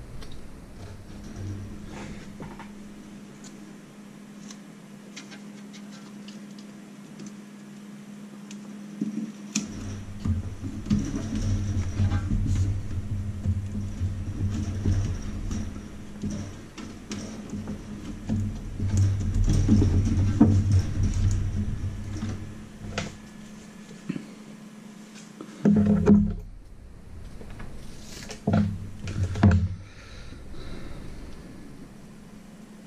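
Rustling, bumps and handling noise of hands pressing adhesive foil insulation into a toaster oven's metal cavity, coming in irregular stretches over a steady low hum.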